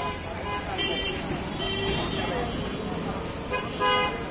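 Busy street din of traffic and background voices, with short vehicle horn toots about a second in, near the two-second mark and just before the end.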